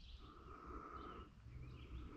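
Faint outdoor background: small bird chirps over a low rumble, with a thin steady tone coming and going.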